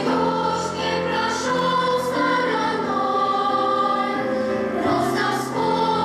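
Girls' choir singing a song in several voice parts, in long held notes, with piano accompaniment.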